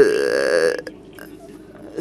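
An interpreter's voice holding a drawn-out hesitation sound for under a second, mid-sentence. After it comes a short pause with faint room noise and a light click or two.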